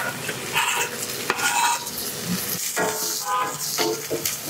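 Onions and garlic sizzling as they fry in oil in a copper saucepan, stirred with a wooden spatula in irregular scraping strokes.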